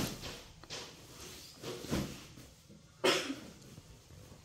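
Soft rustles and swishes of a cotton duvet, sheets and pillows being handled, a few brief ones in the first two seconds.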